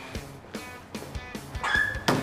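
Background music with a steady beat, and near the end a short, high-pitched dog yelp.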